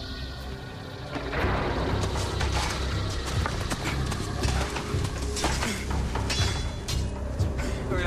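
Television drama soundtrack: music, joined about a second in by a dense run of crackles and knocks over a low rumble.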